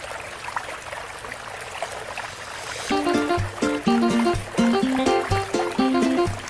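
Swimming-pool water sound, light splashing and lapping from swimmers, heard on its own for the first half; about halfway through, background music with a steady beat starts up over it.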